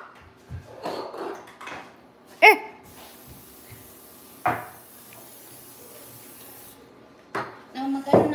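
Quiet kitchen with a few soft knocks and handling sounds of bowls and trays. A short, high, rising vocal call comes about two and a half seconds in, and another brief voice sound just before the middle.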